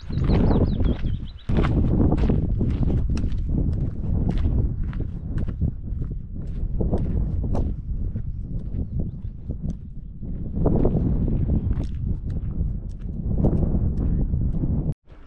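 Hiking boots crunching on a loose gravel track in irregular steps, under a steady low rumble of wind on the microphone.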